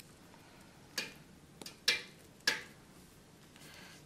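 About four sharp plastic clicks of pen caps being snapped off and on, spread over a second and a half, the third the loudest, over a faint steady refrigerator hum.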